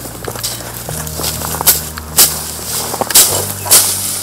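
Machete swishing through and chopping leafy desmodium fodder stems, with rustling leaves: a run of sharp cuts, the strongest ones in the second half.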